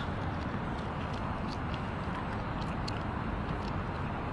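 Steady outdoor city background noise, a low hum of traffic, with a few faint clicks.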